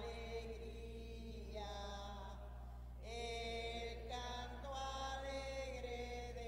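Slow hymn sung in long held notes, the entrance song of a Mass as the priest comes to the altar, getting louder about halfway through. A steady low electrical hum runs underneath.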